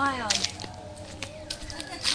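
A voice trails off at the start, then quiet outdoor ambience with a faint far-off voice and a few light clicks.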